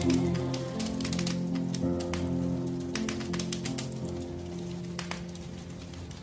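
A Christmas song's last held notes fading out, with the irregular pops and crackles of a log fire coming through as the music dies away.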